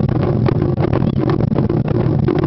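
Japanese taiko ensemble drumming: fast, dense stick strokes on small rope-tensioned shime-daiko over the deep beats of large barrel-shaped nagado-daiko, forming a continuous loud roll.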